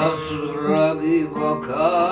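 A man singing long, wavering held notes to acoustic guitar accompaniment in a live folk performance.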